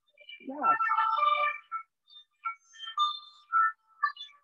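French emergency-vehicle siren sounding, its two alternating tones coming and going in short breaks.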